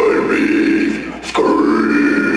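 Death metal vocalist's deep guttural growl through a PA microphone, with no band playing: two long held growls, the second starting abruptly a little over a second in.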